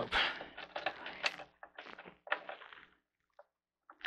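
Cable connectors and wires being worked loose inside a Lenovo H410 desktop's metal case: a few faint clicks, knocks and rustles, stopping about three seconds in.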